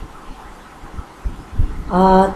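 A few soft, irregular low thumps in a pause between lines of Sanskrit mantra chanting, then the chanting voice comes back in on a held note near the end.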